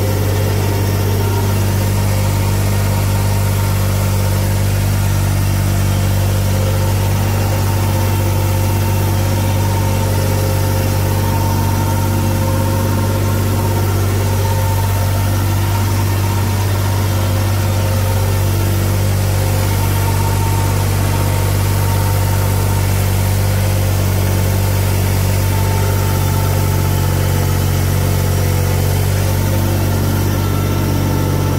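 New Holland tractor's diesel engine running steadily under load while pulling a tillage implement through a field, heard from the operator's seat; the engine note holds an even, unchanging pitch throughout.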